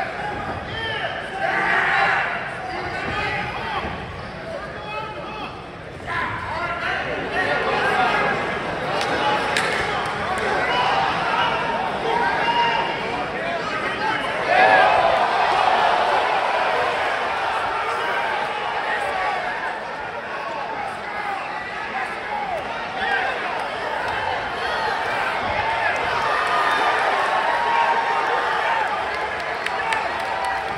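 Fight crowd shouting and talking around a boxing-style ring during a bout, with scattered thumps.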